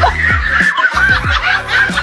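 A person laughing over background music with deep bass notes that slide down in pitch on each beat.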